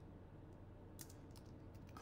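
Faint computer keyboard keystrokes: a handful of quick taps, most of them in the second half.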